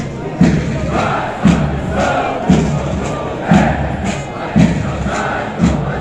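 A formation of paratroopers chanting in unison in a steady rhythm, with a heavy thump about once a second.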